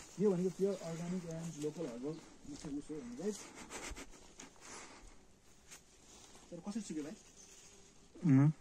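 A man's voice talking, with gaps of soft scattered clicks and rustles in between, the voice returning briefly near the end.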